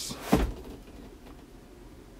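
Cardboard box being handled, with one dull thump about a third of a second in, then only faint room noise.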